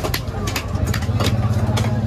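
A motor engine idling close by, getting louder about half a second in, with sharp clicks and knocks from knife work on a large fish on a wooden block.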